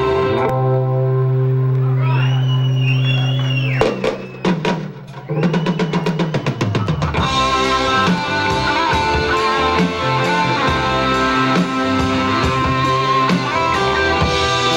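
Live rock band playing: a held chord with guitar notes sliding over it, then a drum fill of quickening hits from about four to seven seconds in, after which the full band of electric guitar, bass and drums comes back in.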